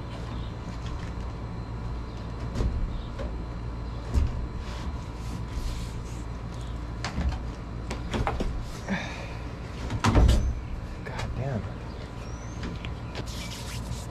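Bumps, knocks and scrapes of a pickup's sliding rear window in its rubber seal being shifted against the opening of a fiberglass camper shell, with the loudest knock about ten seconds in, over a steady low rumble.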